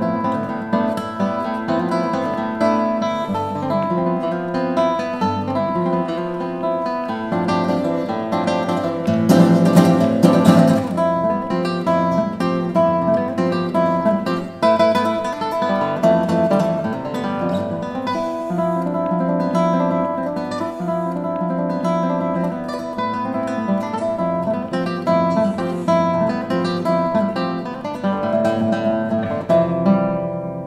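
Solo classical guitar with nylon strings playing a dense contemporary concert piece, with a loud passage of strummed chords about ten seconds in.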